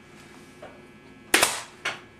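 Staple gun firing twice, about half a second apart, fastening the cording to the chair frame.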